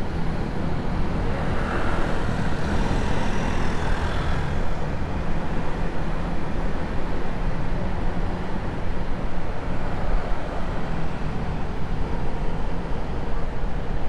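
Motorcycle riding: wind rushing over a helmet-mounted action camera's microphone, with the motorcycle's engine running steadily underneath.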